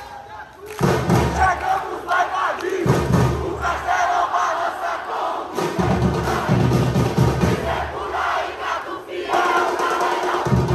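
Football supporters chanting loudly together, with the deep drums of a samba-style supporters' drum band beating underneath. The chant surges in after a brief lull about a second in.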